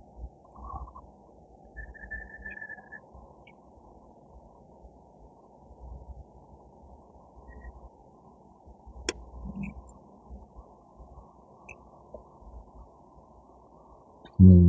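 Faint rustling of roots and loose soil being handled, with a single sharp click about nine seconds in and a brief high tone about two seconds in.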